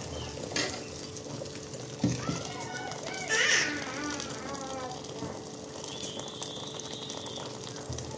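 Water pouring in a steady stream from a kettle into a pot of chicken in tomato sauce. A person's voice is heard briefly, loudest about three and a half seconds in.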